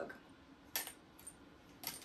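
A single light clink about a second in and a fainter click near the end, from mug press heating attachments being handled and set down.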